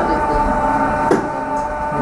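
Electric yarn ball winder running, its motor giving a steady whine as it winds yarn off a spinning wooden swift, with one short click about a second in.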